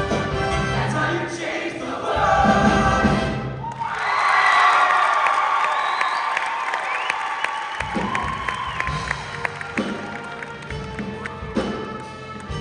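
Show choir singing with its live band. About three and a half seconds in, the band's low end drops away and the audience cheers loudly for several seconds, then the band comes back in with drums about eight seconds in.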